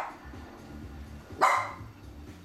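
Small dog barking: the end of one sharp bark at the start, then another short, sharp bark about a second and a half in.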